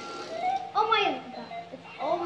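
A young girl's wordless vocal exclamation, loudest about a second in, over a faint steady tone.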